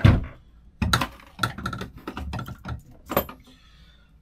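PVC pipe fittings being handled and set down on a workbench: a string of separate plastic knocks and clatters, the loudest right at the start and another strong one about three seconds in.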